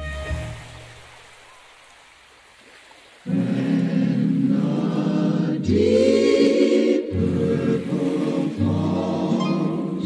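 Music dies away over about three seconds into a brief quiet gap, then a choir comes in suddenly, singing held chords in phrases of a second or two.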